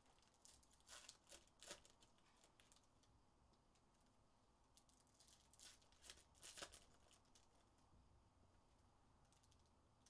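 Faint crinkling and tearing of foil trading-card pack wrappers (2024 Topps Series 1 baseball hobby packs) as they are ripped open and handled, in two short clusters of crackles, about a second in and again around six seconds in.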